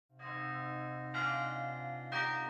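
Carillon bells ringing: one bell is struck just after the start and a second about a second in, the two ringing on together with a long sustain.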